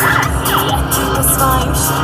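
Electronic music with a steady beat and short gliding synth notes, playing continuously.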